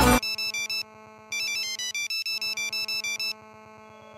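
Band music cuts off, then a ringtone-like electronic melody of short beeping notes plays in two phrases with a brief gap between them.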